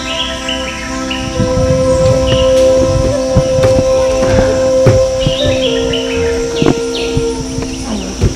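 Background music of long held notes, the main note stepping down about two-thirds of the way through, with short high chirps like birdsong over it.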